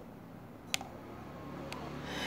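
Faint room tone with a low steady hum, broken by one sharp click a little under a second in and a smaller click near the end.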